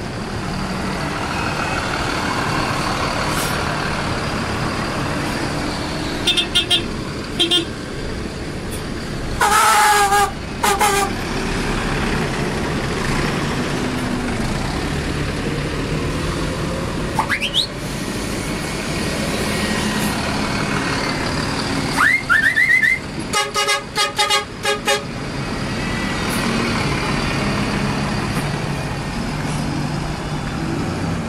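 City buses running and pulling away, their engines rumbling steadily. Horns sound over them: a few short toots about six seconds in, a louder, longer blast around ten seconds, and a rapid string of short toots midway through the second half. Two brief rising whistles are heard between the horn groups.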